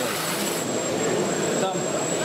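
Several people talking at once over a steady rushing background noise, with a thin high whine running underneath.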